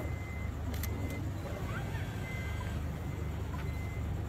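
A van's engine idling with a steady low rumble, a faint thin tone coming and going, and a couple of sharp clicks just under a second in.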